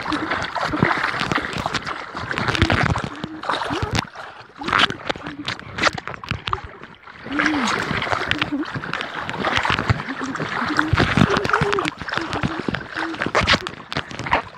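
Lake water splashing and sloshing close to the microphone as a swimmer moves about, in many short, uneven splashes.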